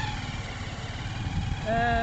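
Low, uneven rumbling background noise, with a drawn-out spoken 'ee' near the end.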